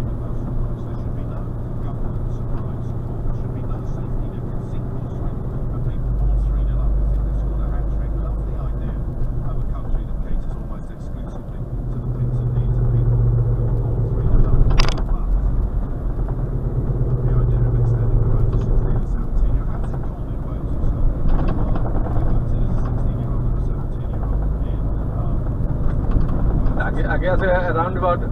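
Lorry cab interior: diesel engine and road noise, a low rumble that swells and eases as the truck drives along, with one sharp click about halfway through. Near the end a voice starts.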